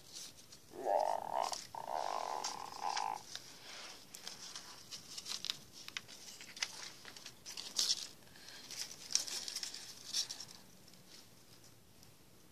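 Paper cutouts rustling and crinkling as they are handled, with short scratchy scrapes scattered through. About a second in, a rasping, growl-like noise lasts about two seconds.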